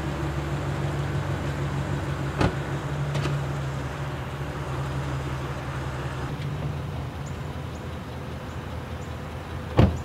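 Pickup truck engine idling steadily. A door shuts about two and a half seconds in, and a louder sharp knock comes near the end.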